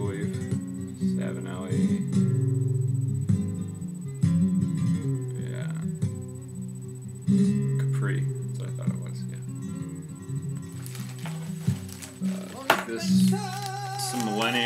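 Acoustic guitar music in a flamenco style, plucked notes over held low tones, playing in the background.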